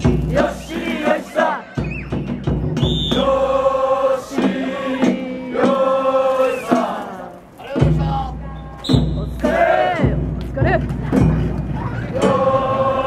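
Festival troupe of men chanting long, drawn-out calls in unison, with heavy deep drum beats between the calls.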